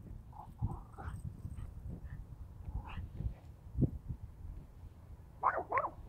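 Small dog on a leash giving faint whines, then two short, louder cries close together near the end, excited by a cat in front of it.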